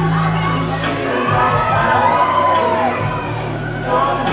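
Audience cheering and shouting over a hip hop track; the track's bass drops out about a second in, leaving mostly the crowd's calls for the rest.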